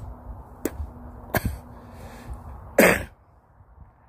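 Wind rumbling on the microphone with two short sharp clicks, then a single loud cough near the end.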